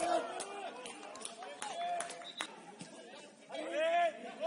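Footballers' shouted calls on the pitch, with a few short sharp knocks in between.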